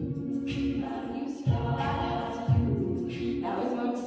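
Female a cappella group singing held chords in close harmony, with strong low beats, like beatboxed kick drums, coming in about a second and a half in and again a second later.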